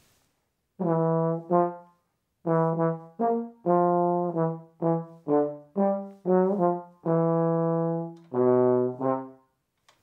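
Trombone played open, without a mute: a short phrase of about fourteen detached notes with a brief pause after the first two and a few longer held notes, dropping to lower notes near the end.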